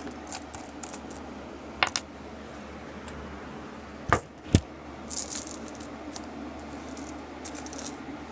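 Pennies clinking and jingling against each other as they are handled and spread out, with two sharper knocks a little after four seconds in.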